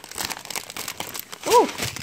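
Plastic cracker packet and its clear plastic tray crinkling as the pack is opened and handled. About one and a half seconds in comes a brief squeaky tone that rises and falls, the loudest moment.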